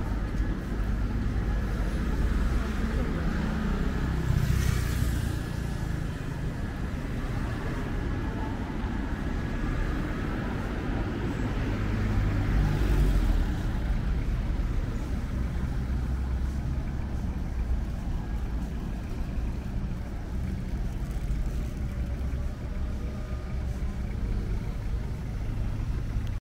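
City road traffic: a steady low rumble of cars and vans, with vehicles passing close by about five seconds in and again, loudest, about thirteen seconds in.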